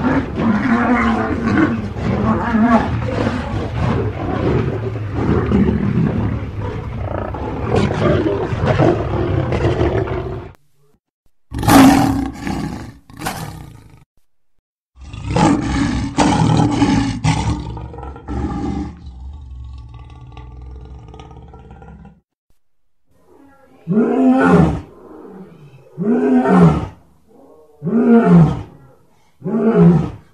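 Lions roaring, in several recordings cut one after another with abrupt breaks. About ten seconds of continuous loud calling, then shorter roars, and near the end four separate roars about two seconds apart, each rising and then falling in pitch.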